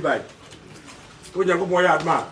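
A man's voice making wordless, drawn-out vocal sounds. One call trails off at the start, and after a short pause another begins about one and a half seconds in.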